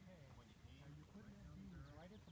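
Faint distant voices talking over low wind rumble; no gunshot.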